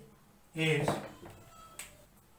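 Speech: a man's voice says one short, drawn-out word about half a second in, then it goes quiet apart from a faint click near the end.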